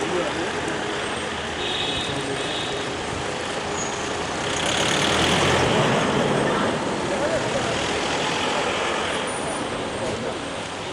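An SUV driving slowly past close by, its engine and tyre noise swelling to its loudest about halfway through, amid voices.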